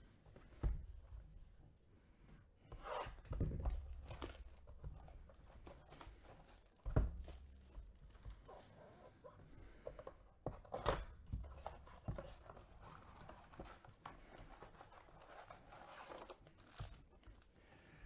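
Plastic wrap torn and crinkled off a cardboard trading-card blaster box, then the box opened and its foil card packs handled, with several soft knocks of cardboard on the table.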